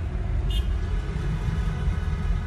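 Steady low rumble of road traffic and the car, heard from inside the car's cabin, with one brief click about half a second in.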